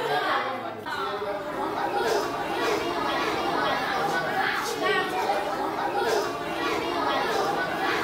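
Many voices chattering at once, a group of schoolchildren talking over each other with no clear words.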